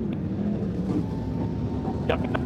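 Sprint car engine running at low, steady revs on a slow lap after the chequered flag.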